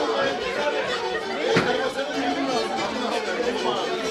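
Many people talking at once in a large hall, with a steady held tone running underneath and a single sharp knock about a second and a half in.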